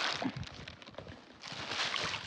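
Plastic bag crinkling and rustling, with small splashes, as it is dipped and shaken in shallow muddy water to let small tilapia out. It is louder near the end.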